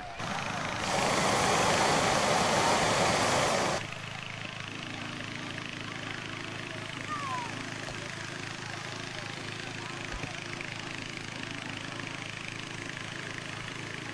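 A hot-air balloon's propane burner roars for about three seconds and cuts off abruptly, then a steady low engine drone carries on underneath.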